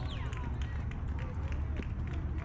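Distant shouting voices from players and spectators over a steady low rumble of wind on the microphone.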